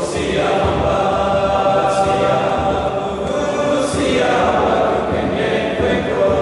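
A boys' school choir singing a hymn in a reverberant stone church, held notes moving on in phrases about every two seconds.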